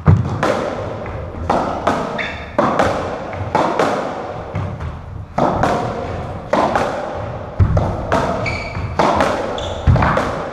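A racketball rally in an enclosed squash court: the ball struck by rackets and hitting the walls, a dozen or so sharp impacts at roughly one a second, each ringing in the court, with brief high squeaks of shoes on the wooden floor.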